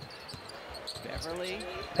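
Basketball dribbled on a hardwood court, heard faintly in the game broadcast's audio, with a faint commentator's voice underneath.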